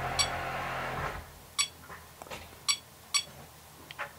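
ToolkitRC M6 charger giving short key beeps, four in all, as its buttons are pressed to step the output voltage setting up. A steady background noise stops about a second in.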